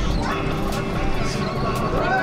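Excited voices and yelps of boat passengers spotting a dolphin, over a steady low rumble of wind on the microphone.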